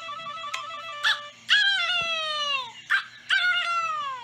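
A rooster crowing twice on a cartoon soundtrack: two long calls, each falling in pitch, after a short stepping musical jingle.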